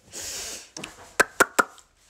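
A dress rustling as it is swung down, then four sharp clicks, one a little before a second in and three close together soon after.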